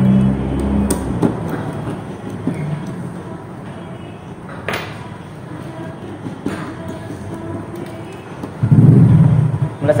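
Faint clicks and scrapes from a screwdriver working a circuit breaker's terminal screw as wires are handled, a few sharp clicks standing out over a low background.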